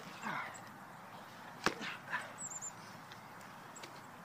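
Rough-and-tumble play on grass: a short vocal sound from one of the players just after the start, then one sharp, loud impact about one and a half seconds in and a couple of smaller knocks.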